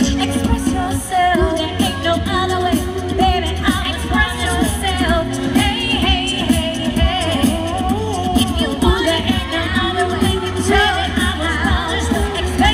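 A vocal group singing a pop song through microphones, a woman's voice carrying the melody over a steady bass line and beat.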